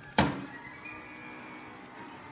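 A Darth Vader alarm clock is set down on a table with one sharp thunk, about a fifth of a second in. Faint music with steady held notes follows it.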